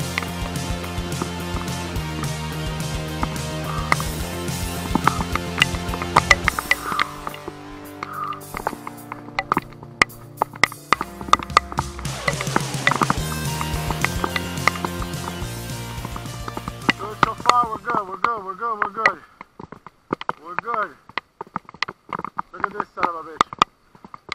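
Background music with held bass notes and regular sharp percussive hits. About 18 seconds in the music drops away and a voice comes in, in short phrases with gaps between them.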